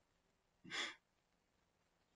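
A man's brief sigh, a single short breath just over half a second in.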